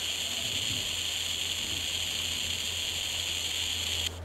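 Steady hiss from a 433 MHz superregenerative data receiver module, played through a small speaker by a one-transistor amplifier. This is the receiver's open noise with no carrier present to quiet it.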